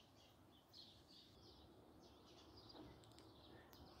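Near silence, with faint, scattered bird chirps.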